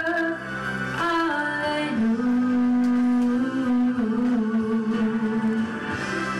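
A woman singing a slow song into a microphone, holding long notes that step lower in pitch in the second half.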